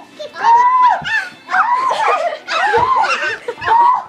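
High-pitched laughter and squealing voices in a string of short bursts.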